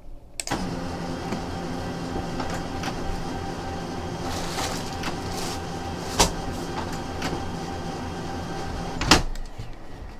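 Office printer's mechanism running, a steady motor whir for about nine seconds with a sharp click about six seconds in and a louder clunk as it stops. It is a print attempt that does not go through: the printer is down.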